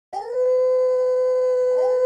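A wolf howl sound effect: one long howl that rises in pitch at the start, then holds a steady pitch.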